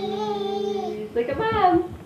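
A toddler's voice singing out long drawn vowels: one steady held note for about a second, then a shorter note that rises and falls in pitch.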